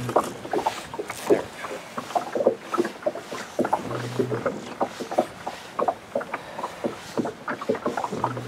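Water lapping and slapping against the hull of a boat, in irregular small knocks and splashes, with a brief low steady hum about halfway through.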